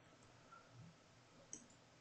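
Near silence with a few faint computer keyboard keystrokes, the clearest about one and a half seconds in.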